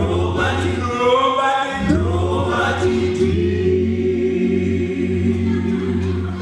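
Male a cappella vocal group singing close harmony over a deep bass voice, with no instruments. From about three seconds in, the voices hold one long sustained chord.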